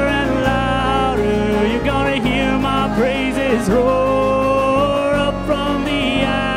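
Live worship band playing a song: a woman's voice sings long, wavering held notes over acoustic guitar, electric guitar and bass.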